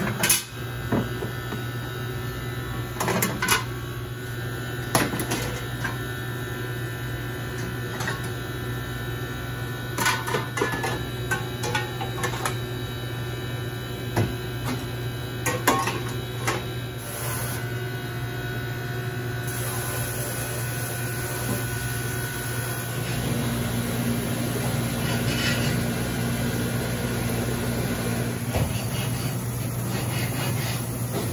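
Steady machine hum with scattered metal clanks as wire grates and fry-basket holders are set into emptied stainless-steel deep fryers. In the second half a steady hiss joins as hot water is sprayed from a hose into the fryers.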